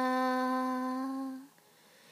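A singer's voice holding one long, steady note that fades out about a second and a half in, leaving near silence.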